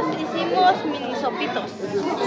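Several people talking at once: the general chatter of a family gathering, no single voice standing out.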